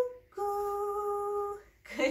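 A woman's voice singing a cuckoo-clock call: a short higher 'cuc-' falls into a long, steady 'koo', held for about a second and a half.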